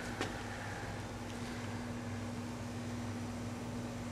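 Steady low electrical hum with a few fixed tones over a faint even hiss, and one light click just after the start.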